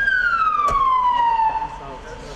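A siren giving one long tone that falls steadily in pitch over about a second and a half, then fades out as it winds down.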